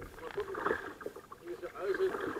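Faint, indistinct talking with the water sounds of a kayak being paddled along a calm river.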